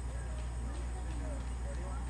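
Faint, indistinct talk from people over a steady low rumble, with a few soft taps scattered through it.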